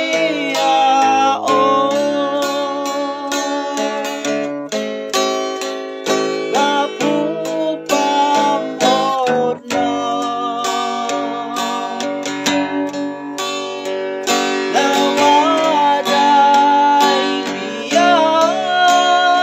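A man singing a Christian song in the Ifugao language to his own regularly strummed acoustic guitar.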